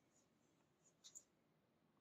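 Near silence: room tone, with a couple of very faint clicks about a second in.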